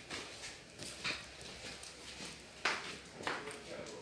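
A few soft, irregular footsteps on a ceramic-tiled floor, with quiet room tone between them.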